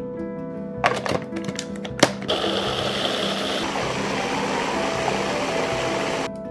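A few sharp knocks, then a Cuisinart Pro Classic food processor motor running steadily from about two seconds in, blades pureeing strawberries; its sound shifts about a second and a half after it starts as the berries break down. Background music plays underneath.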